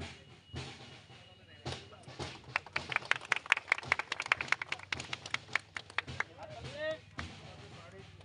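Several people clapping by hand, in sharp irregular claps that pick up about two and a half seconds in and die away around six seconds, amid crowd voices.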